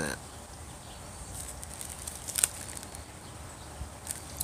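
A few faint crinkles and clicks of a plastic zip-top bag being opened and handled, the sharpest a little past halfway, over quiet outdoor background.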